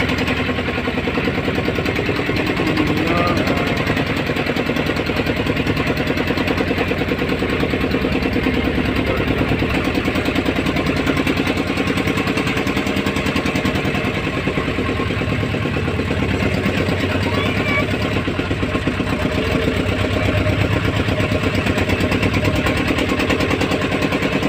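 Motorboat engine running steadily under way, a fast, even chugging beat with no change in pace.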